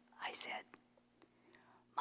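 A woman's storytelling voice: one short breathy vocal sound just after the start, then a pause with a few faint clicks.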